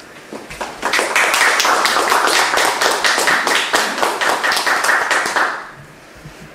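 A small audience applauding: dense clapping that builds about a second in, holds, and dies away shortly before the end.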